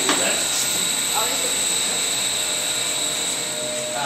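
Biomass boiler plant running: a steady mechanical noise with a thin high whine over it.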